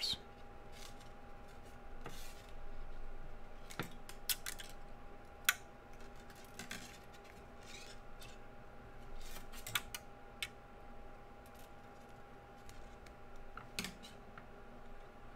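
Sterling silver half-round wire being wrapped by hand around square wires: soft scraping swishes as the wire is drawn through and around, with scattered light metallic clicks, the sharpest about five and a half seconds in. A faint steady hum runs underneath.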